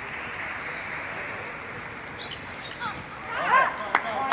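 Steady background hiss of a table tennis hall, then a short voice call about three seconds in, loudest around three and a half seconds, and a single sharp click of a celluloid table tennis ball being struck just at the end.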